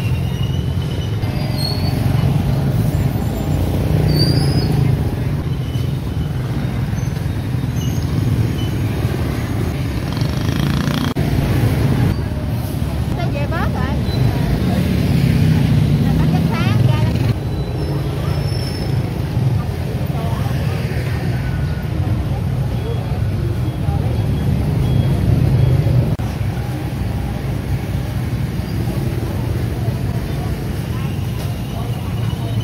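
Busy street-market ambience: motorbike engines running and passing, swelling and fading, with people talking in the background.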